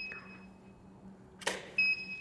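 A camera shutter click about one and a half seconds in, followed about a third of a second later by a short high beep: the Profoto D2 studio flash's ready signal after recycling. The tail of an earlier such beep sounds at the very start.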